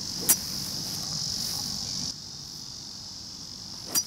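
Two sharp clicks of a 4-utility (hybrid) club striking a golf ball out of deep rough, the first about a second in and the loudest, the second near the end. The shot is a 'tempura', the ball caught high on the clubface and skied. A steady high-pitched insect drone runs underneath.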